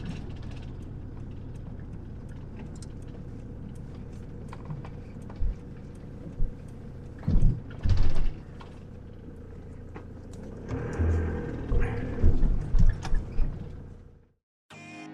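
Campervan heard from inside the cab, running at low speed with a steady engine and road rumble. From about five seconds in come occasional thumps and rattles as it rolls over a rough, patched track, busiest near the end.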